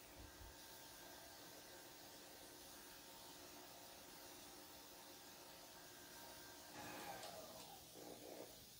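Near silence: the stand mixer's motor is only a faint steady hum while its paddle beats the batter at medium speed, growing slightly louder near the end.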